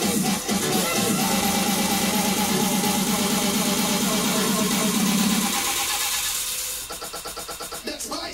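Electronic dance music playing in a DJ mix, with a fast steady rhythm and heavy bass. A little past halfway the bass drops out and the track thins and gets quieter, leaving a fast ticking beat near the end, as in a breakdown or transition between tracks.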